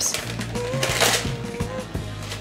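Background music with a steady bass line and a held note. Over it, a plastic bag of chocolate chips crinkles as it is torn open, with a burst of rustling about halfway through.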